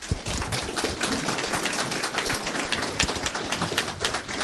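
Audience applauding: a dense stream of hand claps that starts suddenly and goes on steadily.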